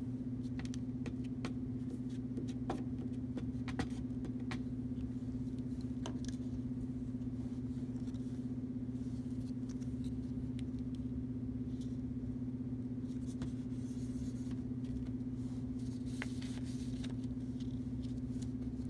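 A steady low hum throughout, with a few faint taps and rustles as construction-paper pieces are handled and pressed down with a glue stick.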